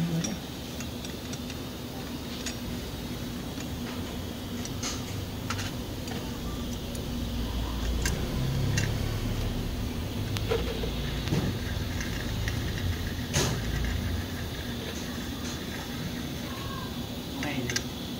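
Hand wrench tightening bolts on a Honda Wave S110 engine case: scattered, irregular sharp metallic clicks and clinks of the tool over a steady low hum. A low rumble swells for several seconds in the middle.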